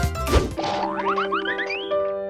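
Background music with a cartoon 'boing' sound effect: a short sweep just after the start, then a quick run of short rising pitch slides over held notes.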